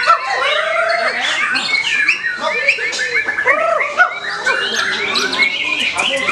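White-rumped shama singing a dense, continuous run of loud whistles and chattering phrases, with several songs overlapping at once.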